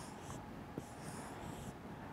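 Felt-tip marker drawing on a whiteboard: faint, high-pitched strokes as oval shapes are drawn.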